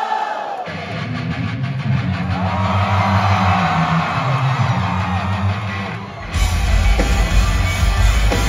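Live pop-punk band in concert: a crowd sings along over bass and guitar, then the full band with drums comes back in, much louder, about six seconds in.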